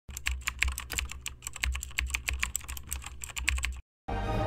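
Computer keyboard typing: a rapid, uneven run of key clicks, several a second, that stops suddenly shortly before the end.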